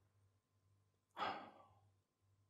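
A man's single short breath, a sigh, about a second in; otherwise near silence.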